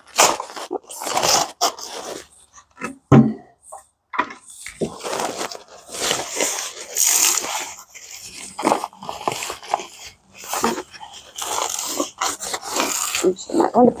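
Heavy paper sack of concrete mix being handled and opened: crinkling, rustling paper in irregular bursts, with one thump about three seconds in.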